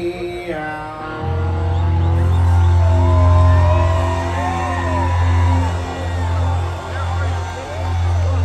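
Live band playing the closing bars of a country song through a large outdoor festival PA, heard from within the crowd: a loud low bass note is held under sustained chords from about a second in. Crowd voices shout over the music a few seconds in.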